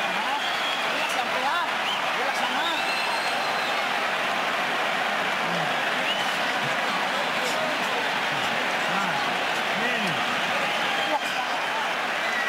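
Large arena crowd cheering and shouting, a steady dense wash of many voices with scattered individual shouts rising out of it.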